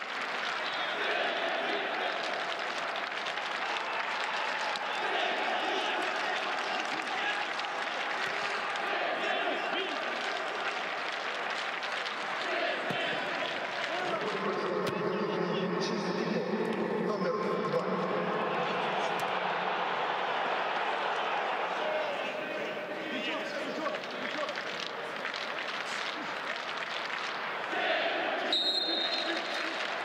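Live pitch-side sound of a football match: voices shouting and calling across the pitch over a steady crowd murmur, with occasional thuds of the ball being kicked.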